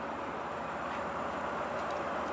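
Steady background noise of a city street at night: an even hiss and hum with no distinct events.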